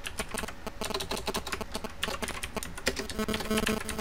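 Typing on a computer keyboard: rapid key clicks, several a second, as a name is typed. Some guitar music comes in near the end.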